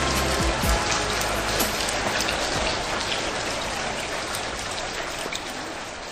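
Recorded rain, an even hiss with scattered drop clicks, fading slowly away as the track ends. The last low music notes stop within the first second.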